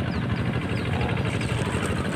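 A steady low engine hum, with faint short high chirps now and then.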